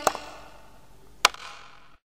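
Faint hiss fading after the singing stops, broken by a sharp click right at the start and a single louder click just past a second in.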